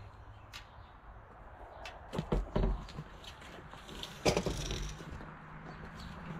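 Scattered knocks and clatter of a long pipe being carried and handled, with the loudest knock about four seconds in.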